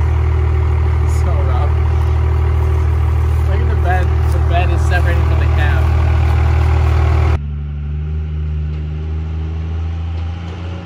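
Lifted Dodge Ram pickup's engine idling steadily close by, with faint voices over it. About seven seconds in the sound cuts to the same truck's engine running at a distance, quieter.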